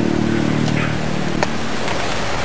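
A steady engine drone, which fades out about three-quarters of the way through, with two light clicks near the end.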